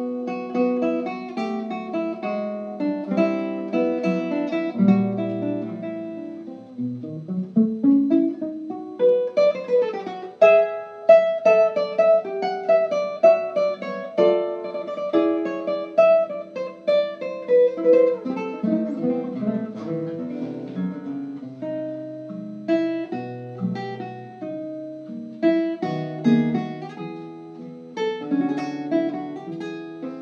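Solo classical guitar played fingerstyle: plucked melody notes over ringing bass notes, with a quick rising run of notes about eight seconds in.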